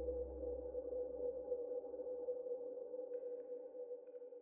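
Ambient background music: a held drone of steady low tones over a bass hum. It slowly fades out near the end.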